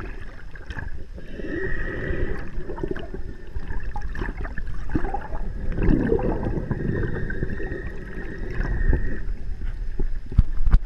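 Underwater water noise: sloshing and gurgling with low rumbles against the camera. A long steady high tone runs through most of it, with lower moaning tones rising and falling about a second in and again around the middle.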